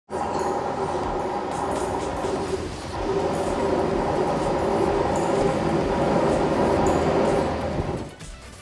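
A GWR Class 166 Turbo diesel multiple unit running into a platform: a steady droning engine hum with whining tones that gets louder about three seconds in as the train draws closer.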